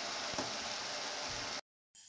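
Minced meat sizzling in a stainless steel frying pan as it is stirred with a wooden spoon, a steady hiss with a faint tap about half a second in. The sound cuts off abruptly near the end.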